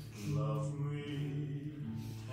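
Slow vocal music: a low voice singing long, held notes, with short breaks between phrases.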